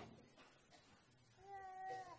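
Near silence, then about one and a half seconds in a short, faint, high mewing cry that is held for about half a second and bends down at the end.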